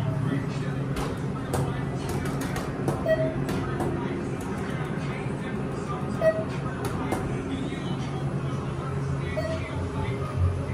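Inside a TK Elevator car: a steady low hum, with a short electronic beep that repeats about every three seconds. A run of sharp clicks comes in the first few seconds, and one more a little after halfway.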